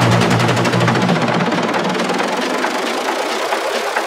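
Techno mix in a breakdown. The kick and bassline are filtered away, with the low end thinning steadily, and a fast, buzzing, machine-like synth loop with rapid hi-hats is left.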